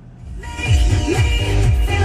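FM radio music with a heavy bass beat playing through the Escalade's factory Bose audio system, swelling up over the first half-second or so as the volume knob is turned up.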